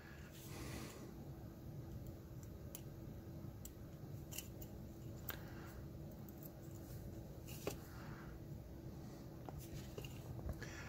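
Faint handling sounds of a small circuit board: light clicks, ticks and short scrapes as diode leads are bent and pushed through the board's holes, over a faint steady hum.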